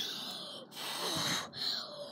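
A girl taking deep, audible breaths in and out, blowing out through rounded lips, about three breaths in a row.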